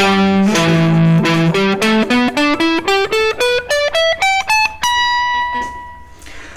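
Electric guitar playing a pentatonic scale pattern one note at a time: a few lower notes, then a quickening run that climbs steadily up the scale and ends on a held high note that rings and fades.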